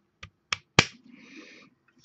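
Plastic parts of a Transformers action figure clicking as a piece is pushed in and pegged into place: three sharp clicks within the first second, the last the loudest, then a faint, brief rustle of handling.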